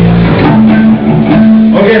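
Electric guitar notes played loosely from the stage between songs: a low note held about half a second, then a steady higher note ringing for over a second. A man starts speaking near the end.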